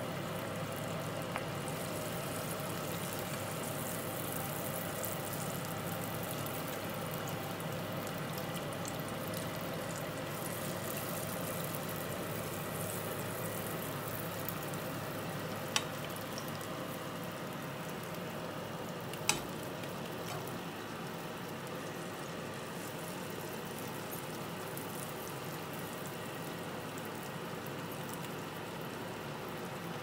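Sunflower oil sizzling steadily as sweet rice-flour fritters (seeni ariyatharam) deep-fry in a pan. Two sharp clicks, about 16 and 19 seconds in.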